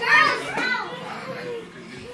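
Children's high voices calling out during a game of chase, loudest in the first second and then quieter.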